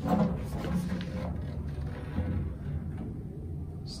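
A wooden upright-piano cabinet panel being handled and set aside: soft knocks and rubbing, loudest just after the start.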